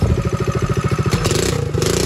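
Predator 212 single-cylinder four-stroke engine on a mini ATV running at a fast, even beat, with a band of hiss rising over it about halfway in. The engine is running on the new cogged V-belt drive, which still fails to move the quad.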